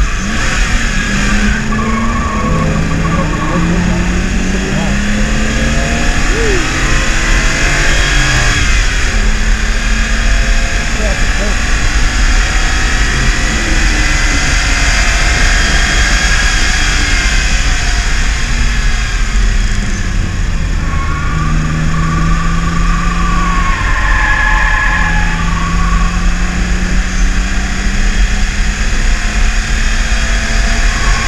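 BMW E36 328is straight-six engine heard loud inside the cabin at speed, its revs rising as it pulls through the gears and dropping as it slows, then climbing again. Steady road and wind noise runs underneath.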